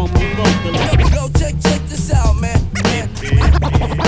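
Hip-hop beat with heavy kick drums and DJ vinyl scratches on a turntable, several short back-and-forth scratch sweeps over the beat.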